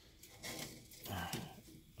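Handling noise as an aircrete block is gripped and tipped up on a gas stove's grate, a rough scraping rustle starting about half a second in, with a brief low murmured voice.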